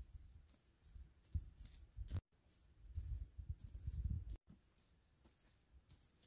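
Faint crackling and rustling of dry leaves, straw and twigs as plastic animal figurines are moved across them, in short patches with low bumps from handling, broken by two brief drop-outs.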